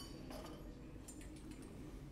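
Faint light clicks and clinks of lab equipment being handled as a combustion boat is taken out of a glass tube, over a low steady room hum.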